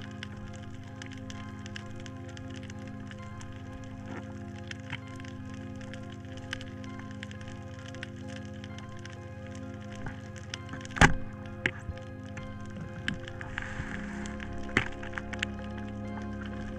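Background music with sparse underwater clicks, and about eleven seconds in a single sharp crack: a speargun firing and spearing an octopus.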